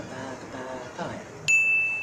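A single bright ding sound effect about a second and a half in: one high bell-like tone that starts sharply and rings on, fading slowly.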